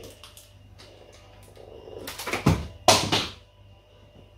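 A camera battery dropped and clattering: two loud knocks a fraction of a second apart, about two and three seconds in, after a few faint handling clicks.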